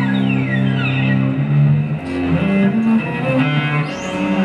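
Live instrumental music with a bowed cello holding long low notes, moving to new notes in shorter strokes about halfway through, over the rest of the ensemble.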